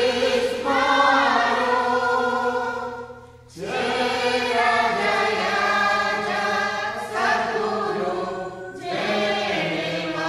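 Choir singing slow, held phrases, with short pauses between phrases about three seconds in and again near the end.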